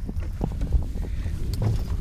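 Wind buffeting the microphone as an uneven low rumble, with a few light knocks or handling bumps.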